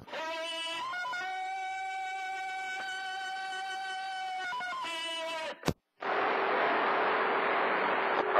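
Tarzan yell sound effect played from a computer noise box over CB radio: one long held call with pitch glides at its start and end. It cuts off with a sharp click, followed by receiver hiss with a faint steady tone.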